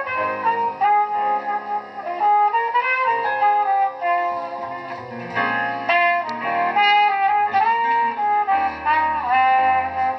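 Live band instrumental: a trumpet plays a melodic solo line of held and sliding notes, accompanied by piano and upright double bass.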